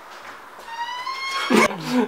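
An animal's high-pitched cry, slightly rising and lasting under a second, followed by a short, louder sound near the end.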